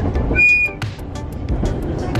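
Running noise of a diesel train heard from on board: a steady low rumble with scattered wheel-on-rail clicks. About half a second in, a brief, high, steady whistle tone sounds.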